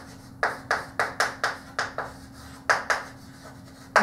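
Chalk writing on a blackboard: a quick run of short, sharp taps and clicks as the chalk strikes and drags across the board, about nine strokes with a short pause before the last two.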